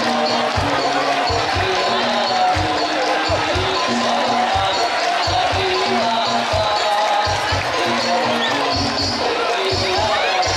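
Music with a low drum beat, about two to three thumps a second, under a melody of held notes, with voices mixed in.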